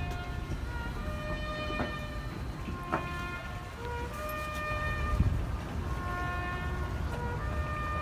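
A solo brass horn playing a slow melody of long, held notes. The pitch steps up and down every second or so, and the last note is held for a couple of seconds near the end.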